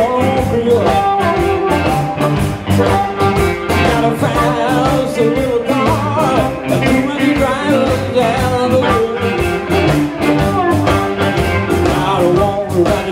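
Live blues band playing an instrumental stretch: an amplified harmonica plays wavering, bending lines over electric guitars and drums keeping a steady beat.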